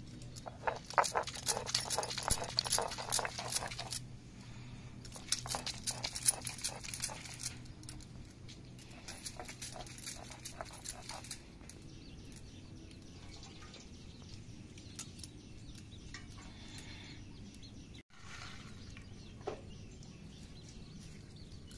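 Stone roller ground back and forth over wet leftover rice on a flat stone grinding slab (sil-batta), crushing the grains with gritty, crackling strokes. The grinding comes in three bouts of a few seconds each, then fainter.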